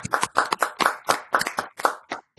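A few people clapping their hands, the claps uneven and overlapping at about six to eight a second, heard over a video call.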